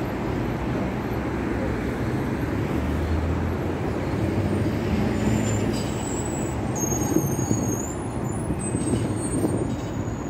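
Steady city street traffic from cars and buses on a wide road, a continuous rumble of engines and tyres. A thin high squeal sounds briefly about seven seconds in.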